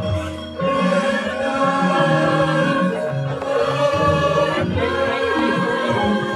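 Javanese gamelan ensemble playing a ladrang, its bronze instruments ringing in sustained tones under a group of voices singing.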